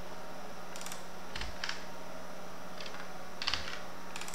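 A few separate, spaced-out computer keyboard keystrokes, the loudest about three and a half seconds in, over a steady low hum.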